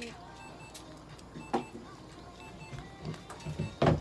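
Faint background music under room tone, with a light click about a second and a half in and a sharp knock near the end.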